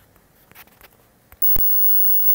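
A few faint clicks and rustles of handling, then one sharp, loud click about a second and a half in, followed by a steady low background hum.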